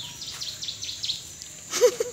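A bird calls a quick run of about six short falling chirps over a steady high-pitched insect drone, and near the end a chicken clucks loudly.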